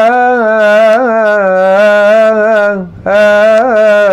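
Solo male voice chanting a Coptic hymn unaccompanied, drawing out long vowels in wavering melismatic ornaments. The phrase breaks for a breath just before three seconds in, and the next long phrase begins at once.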